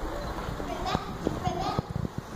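Faint children's voices on a stage, with a few light knocks scattered among them.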